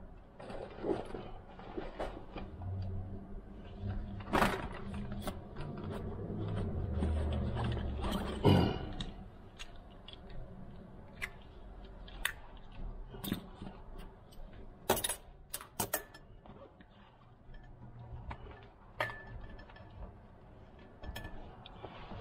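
Clicks, knocks and clatter of a manual wheelchair's metal frame and parts being handled and taken apart, with a few sharper knocks in the first half and a low rumble during the first several seconds.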